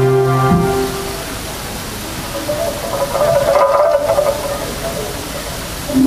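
Electronic keyboard music: a held synthesizer chord stops about half a second in. A steady rushing noise follows, with a brief cluster of higher tones swelling in the middle. A new held chord comes in right at the end.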